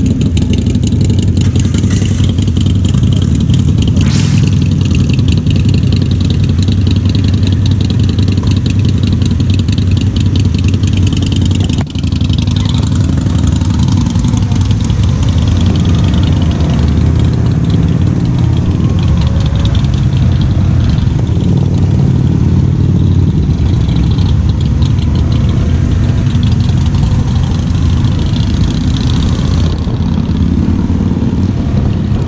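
Several motorcycle engines idling and pulling away one after another, a steady low engine drone. A single sharp click about four seconds in.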